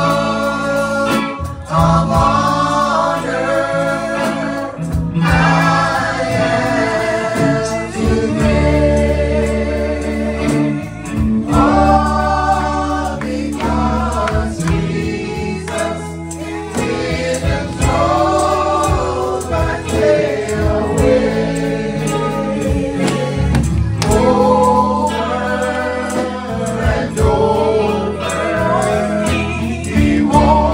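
Live gospel worship singing: a male lead singer and a group of backing singers on microphones, in sung phrases a second or two long over a band with guitar and steady bass notes.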